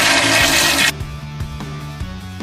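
Loud rushing water that cuts off abruptly just under a second in, followed by background music with a steady beat.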